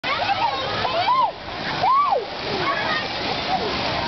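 Water splashing and running in a lazy river, with high children's voices calling over it; two loud rising-and-falling calls come about one and two seconds in.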